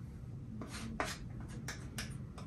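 Faint scrapes of a palette knife through thick oil paint: a few short strokes.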